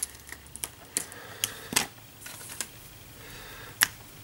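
Scattered light clicks and taps of small plastic game pieces being handled: the maneuver dial's black plastic connector pegs being taken out of their bag and fingered. A sharper click comes near the end.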